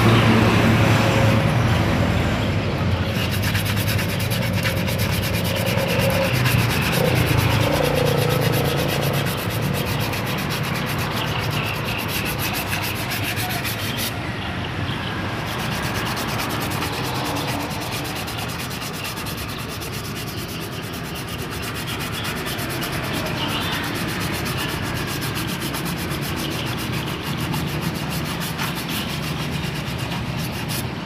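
Sandpaper rubbed steadily back and forth over the linings of a Daihatsu Ayla's rear drum brake shoes to clean them. A low droning hum fades out over the first several seconds.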